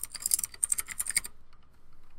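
Typing on a computer keyboard: a quick run of keystrokes typing out a short word, stopping a little over a second in.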